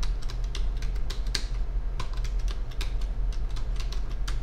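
Typing on a computer keyboard: a quick, uneven run of keystrokes entering a password, over a steady low hum.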